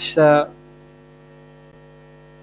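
Steady electrical mains hum, made of several even, unchanging tones, after a man's spoken word cuts off about half a second in.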